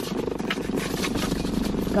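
Car running, a steady engine and road noise heard from inside the cabin.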